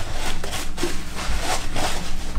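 Pumpkin flesh being scraped and cut with plastic pumpkin-carving tools: rough, irregular scraping strokes.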